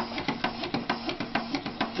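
Background music: a quick, steady ticking beat over sustained low notes.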